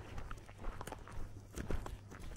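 Footsteps of a person walking, a few short irregular steps, the loudest about three-quarters of the way through.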